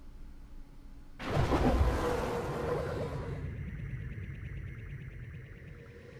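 Outro music sting for a logo card: quiet at first, then a sudden hit about a second in that slowly fades away.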